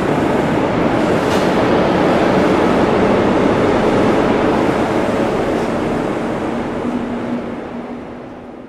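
Loud, steady rumble of a train in motion, with a short click about a second in and a low steady hum joining near the end, the whole fading out at the close.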